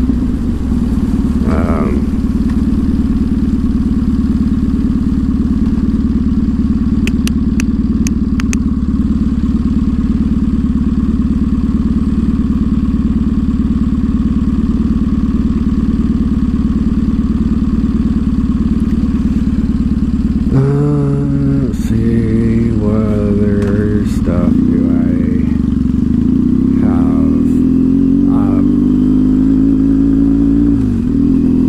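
Triumph Thruxton parallel-twin motorcycle engine heard from the rider's seat, running steadily at a low even pitch for the first two-thirds. Then it revs up as the bike pulls away, stepping up through the gears with the pitch rising toward the end.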